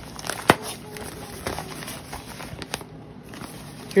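Newspaper wrapping crinkling and crackling as it is handled and pulled off a potted orchid, with a sharp crackle about half a second in.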